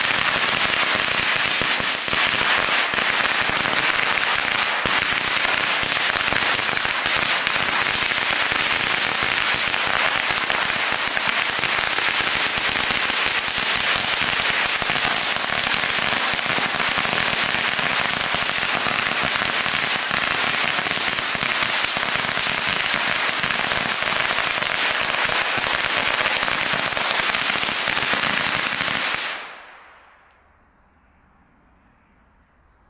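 A 1000-shot firecracker string going off: a dense, unbroken rattle of small bangs that starts suddenly and dies away near the end.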